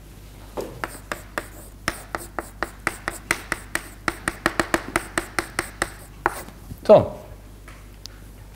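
Chalk writing on a blackboard: a quick, irregular run of sharp taps and scrapes, several a second, stopping about six seconds in.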